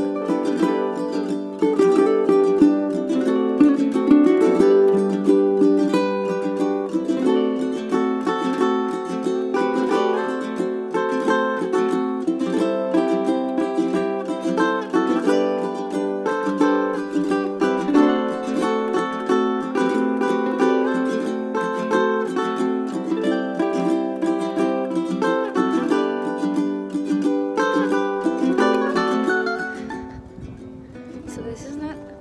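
Background music: a plucked ukulele instrumental, a steady run of notes with no voice.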